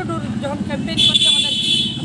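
A vehicle horn sounds one steady, high-pitched blast of about a second, starting halfway through, over a woman talking.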